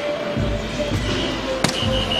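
A soft-tip dart striking an electronic dartboard: one sharp click about one and a half seconds in, as the board registers a triple 20, over background music.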